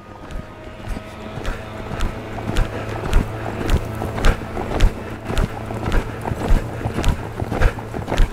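Horse's hoofbeats at a lope on sand arena footing, a regular beat about twice a second that grows slowly louder, over a steady low hum.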